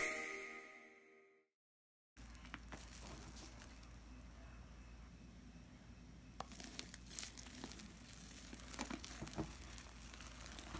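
A music sting fades out in the first second, followed by a brief dead silence. Then comes faint crackling and squelching of fluffy glue slime made with hair mousse as it is squeezed and stretched by hand, with small clicks and pops growing more frequent from about six seconds in.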